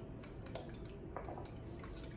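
Faint kitchen handling sounds: a few light clicks and taps of utensils and bowls on a countertop.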